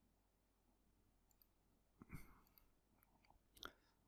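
Near silence: faint room tone with a few soft clicks, a small cluster about two seconds in and a single sharper one near the end.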